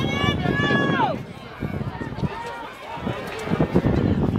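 Spectators shouting and cheering at a track race. One loud, high-pitched yell falls in pitch and breaks off about a second in, over a jumble of crowd voices.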